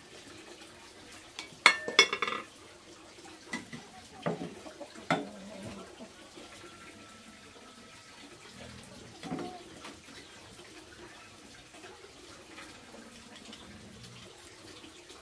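A quick cluster of sharp clattering knocks about two seconds in, then three or four single knocks spaced a second or so apart, over a faint steady background hiss.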